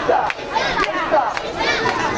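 A crowd of mikoshi bearers shouting a chant together as they carry a portable shrine, many voices overlapping loudly.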